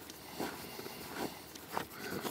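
Footsteps on a gravel path, a few slow walking steps.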